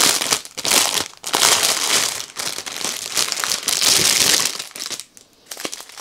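Clear plastic bag crinkling as it is torn open and pulled off a bundle of small plastic drill bags, the rustle coming in several rushes and dying down near the end.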